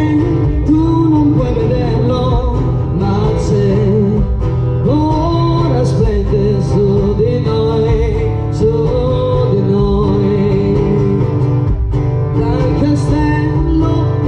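Live amplified song: a woman singing over acoustic guitar, with a steady low bass underneath, played through a PA.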